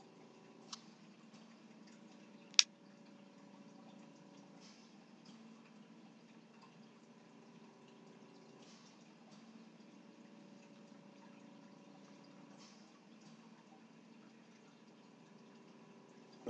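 Quiet room tone with a faint steady hum, broken by two sharp clicks about a second and two and a half seconds in, the second one loud.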